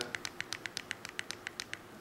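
Rapid, even clicking, about eight clicks a second, from a QSP liner-lock folding knife as its locked blade is wiggled against the handle. The clicks are blade play: the blade knocks in its lock, a looseness that developed with use.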